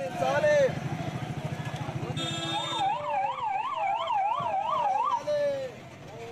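An electronic siren warbling quickly up and down, about three times a second, from about two and a half seconds in until about five seconds, over street noise and voices.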